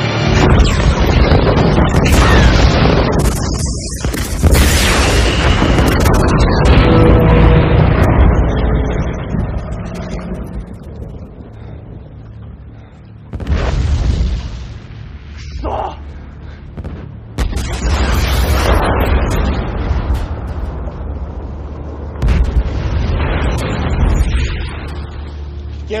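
Film soundtrack of heavy explosions and deep booms over a dramatic orchestral score: the biggest blasts come right at the start and about four seconds in, rumbling on for several seconds, with further booms around 13, 17 and 22 seconds in.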